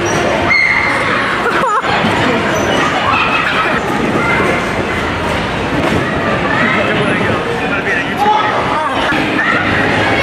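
Voices, several at once, overlapping continuously at a steady loud level.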